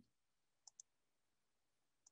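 Near silence with two faint computer mouse clicks in quick succession about two-thirds of a second in, selecting 'New Experiment' from the software's menu.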